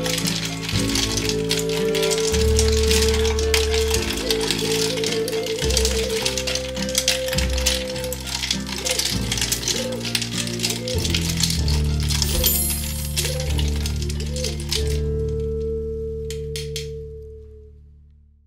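Ice cubes clinking and rattling against a glass pitcher as it is stirred with fruit slices, over background music. The clinking stops near the end and the music fades out.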